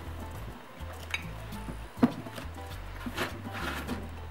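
A few sharp clinks and knocks of porcelain mugs as one is handled and lifted out of its foam packaging tray, the loudest about two seconds in. Background music with a steady low bass line plays underneath.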